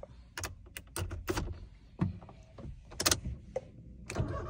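A string of short, sharp clicks and small rattles from a blank key being pushed into a Toyota Yaris ignition lock and turned. The key has no transponder chip in it.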